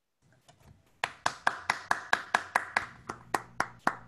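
One person clapping steadily, about four claps a second. The claps start about a second in and thin out near the end, as applause at the end of a talk.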